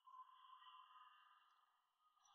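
Near silence, with only a faint steady high drone held throughout.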